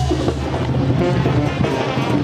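Band music with a steady drum beat playing.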